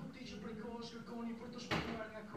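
An adult voice talking quietly in the background, with a short, sharp noise near the end that is the loudest sound.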